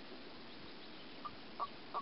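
Common toads croaking: three short calls in the second half, over a faint steady hiss.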